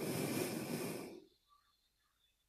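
Steady static hiss on a videoconference audio line that cuts off suddenly about a second in, leaving near silence: the noise fault on the link clearing.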